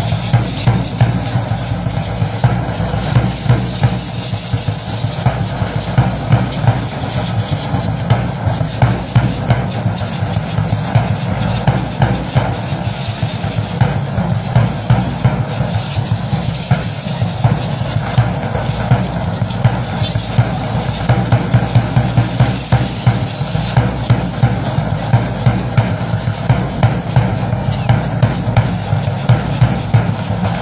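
Drum playing the steady, evenly repeating beat that accompanies a Mexican danza de pluma, the low drum strokes loudest.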